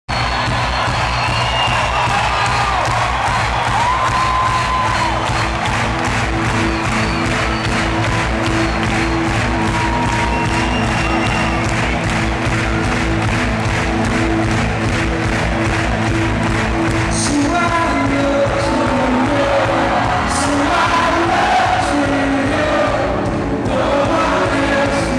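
A live rock worship band playing a song intro over a steady beat, recorded from within a large arena audience, with the crowd cheering and whooping over the music. Voices singing come in over the last several seconds.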